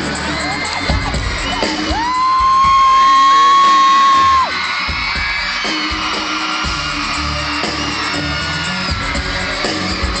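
Live concert sound: loud amplified music with a cheering, whooping crowd. One loud held high note stands over it from about two seconds in until about four and a half seconds.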